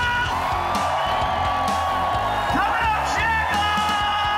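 Rock music with a singer holding long, drawn-out notes over a steady bass and drum groove.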